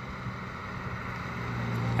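A minivan's engine approaching along the road, growing steadily louder with a low hum.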